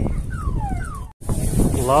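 Two high whines that each fall steeply in pitch over about half a second, heard over background chatter. The sound cuts out for an instant about a second in.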